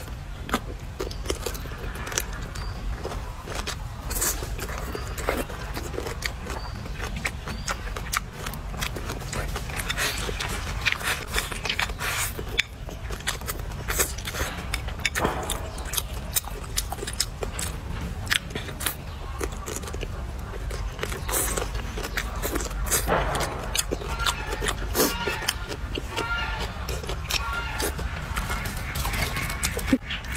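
Close-up eating sounds: biting and chewing crisp green vegetables, an irregular run of wet crunches and clicks.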